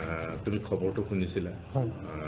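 A man speaking, one voice talking steadily.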